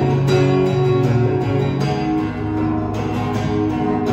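Acoustic guitar strummed in a steady rhythm, about two strokes a second, playing an instrumental passage of the song.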